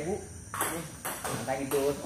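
Table tennis rally: a celluloid ball clicking off the players' bats and bouncing on the table, with voices talking over it.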